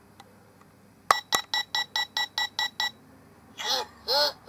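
Anpanman ice cream shop toy's electronic menu panel: a button click about a second in, then a quick run of about nine identical electronic beeps, some five a second, from the toy's small speaker. A voice begins near the end.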